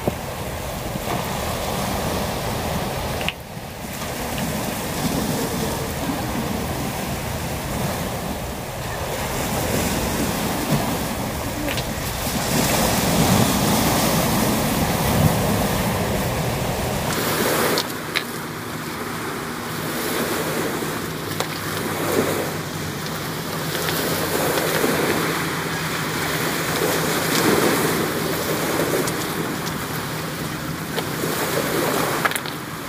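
Sea waves washing and breaking on a rocky shore, swelling and easing, with wind buffeting the microphone. About halfway through, the deepest rumble drops away and a faint steady hum joins the surf.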